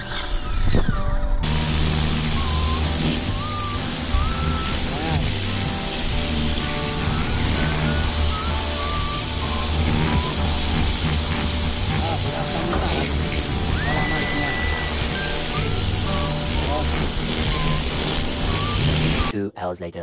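Kärcher pressure washer running, its jet spraying water onto clay roof tiles with a steady hiss that starts about a second and a half in and stops just before the end. Background music plays under it.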